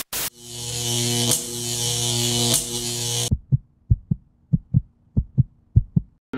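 Edited-in television static: a steady hiss over a low electrical buzz for about three seconds. It cuts off abruptly into a run of short, low thumps, about three a second and mostly in pairs.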